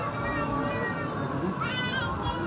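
Chatter of a crowd of people walking through a hall. Near the end comes one brief, high-pitched cry that rises in pitch.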